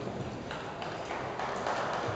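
Hoofbeats of a bay horse moving quickly past close by, a run of uneven dull thuds on sand arena footing.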